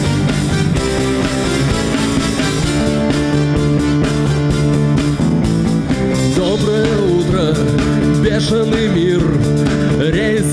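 Live band playing the instrumental intro of a pop-rock song: Korg X50 synthesizer, acoustic guitar, bass guitar and drums, with a wavering lead melody coming in about six and a half seconds in.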